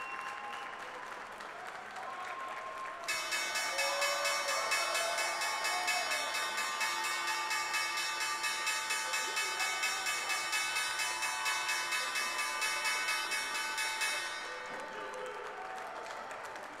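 The New York Stock Exchange's opening bell ringing continuously for about eleven seconds, starting suddenly about three seconds in and stopping near the end, to signal the start of the trading day. Applause runs along with it.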